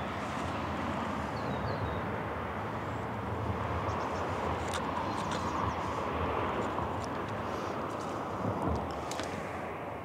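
Steady outdoor background noise: an even rush that swells a little around the middle and eases toward the end, with a few faint ticks.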